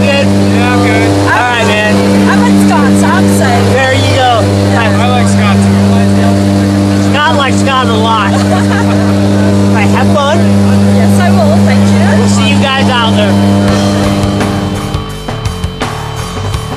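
A jump plane's propeller engine droning steadily, heard from inside the cabin, with voices shouting and whooping over it. Near the end the drone cuts off and a rock music track with a fast beat takes over.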